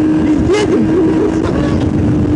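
Kawasaki GTR1000 Concours inline-four engine running at road speed with a steady, even note, under heavy wind rush on the microphone.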